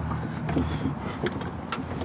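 A few sharp knocks and clunks as a rack is set down into a pickup truck's bed, over a low steady hum.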